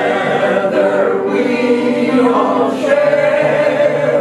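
A mixed group of men's and women's voices singing a song from a musical together, holding long notes.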